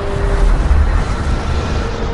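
Cinematic logo-intro sound effect: a loud noisy rush over a deep bass rumble, with faint held tones underneath.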